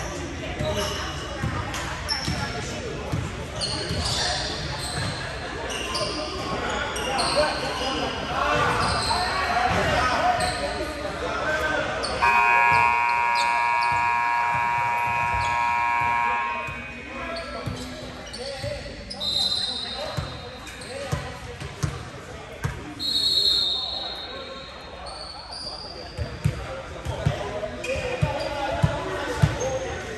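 Basketball being dribbled on a hardwood gym floor, with sneakers squeaking and players calling out. In the middle a scoreboard buzzer sounds one steady tone for about four and a half seconds, and the dribbling picks up again near the end.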